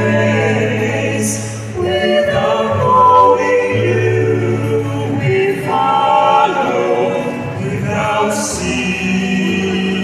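Small church choir of male and female voices singing a hymn in harmony, with sustained low notes underneath.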